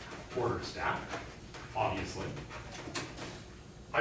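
Quiet, muttered speech in a classroom, with a sharp tap of chalk against a blackboard about three seconds in.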